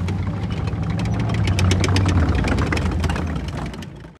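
Outro sound effect: a steady low rumble with a dense crackle of sharp clicks, swelling in the middle and fading out near the end.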